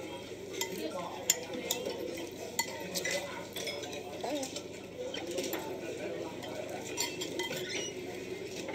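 Cutlery clinking and scraping against plates and bowls in scattered sharp clicks, the sharpest about a second and a half in, over a low murmur of background restaurant voices.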